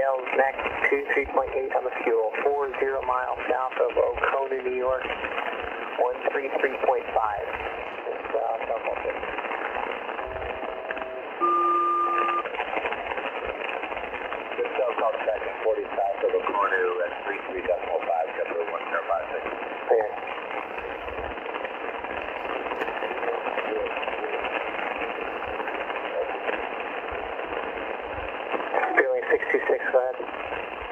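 Shortwave aeronautical radio heard through an Icom IC-R30 in upper sideband: steady static hiss with faint, garbled voices of air traffic fading in and out. About ten seconds in, a SELCAL call sounds: two pairs of steady tones, about a second each, the second pair louder.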